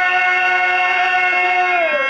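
A male voice singing one long held note of a Telugu stage verse (padyam), sliding down in pitch near the end, with harmonium accompaniment.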